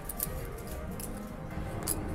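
Casino chips clicking against each other as the dealer sets a payout down beside a bet: a few sharp, separate clacks over steady background music.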